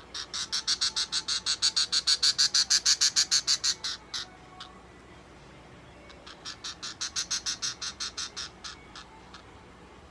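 Budgerigar giving rapid, evenly spaced high chirps, about eight a second, in two runs: a longer, louder one over the first four seconds and a shorter one a couple of seconds later.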